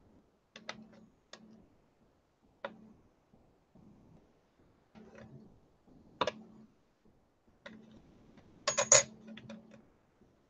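Irregular sharp clicks and light taps of a steel clay blade being set down and pressed against clay and the hard work surface while polymer clay strips are cut. The clicks are scattered, with a louder quick cluster near the end.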